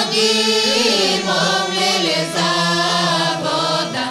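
A Bulgarian folk choir singing in unison over the steady drone of a gaida, the Bulgarian bagpipe.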